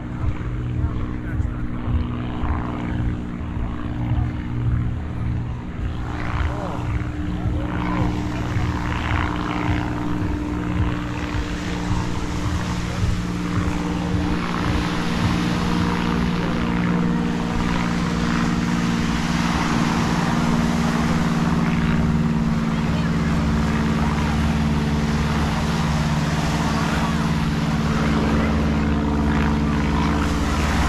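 A small propeller airplane droning overhead with a steady engine note that grows louder through the second half, over the wash of surf and beachgoers' voices.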